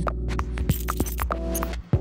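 Background music: a steady low bass drone with a few light ticks, and a held chord coming in about a second and a half in that cuts off sharply just before the end.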